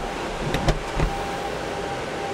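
A steady electric hum with a low rumble under it, and a few sharp clicks in the first second, from the XPeng AEROHT X2 flying car as something in it switches on before takeoff.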